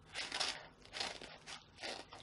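Small scissors snipping through a paper mailing envelope: four short, faint cuts with the paper crinkling.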